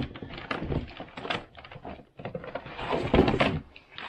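Plastic Scalextric track sections clattering and knocking together as they are rummaged through and lifted out of a case, with the loudest burst of handling about two to three seconds in.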